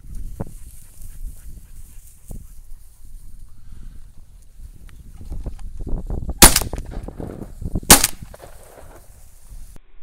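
Two shotgun shots about a second and a half apart, fired at a flushed pheasant, over low wind noise.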